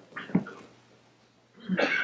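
A man's voice between sentences: short vocal fragments just after the start, a pause of near silence, then a breathy start of speech near the end.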